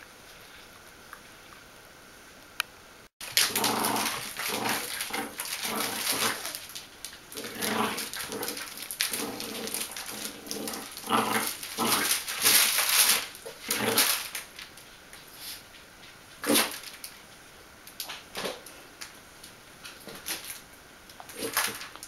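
Two Bichon Frisé puppies play-fighting, giving short high barks and yips in quick, irregular bursts that start suddenly about three seconds in after a quiet stretch.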